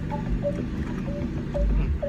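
Car engine idling, a steady low rumble heard inside the cabin, swelling louder for a moment near the end.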